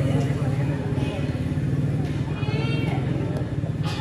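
A performer's voice on stage, rising into a raised, drawn-out call a little past halfway, over a steady low hum.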